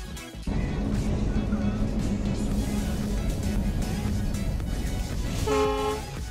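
Diesel locomotive hauling passenger coaches past at close range: a loud, steady rumble that starts about half a second in, with a short horn toot near the end.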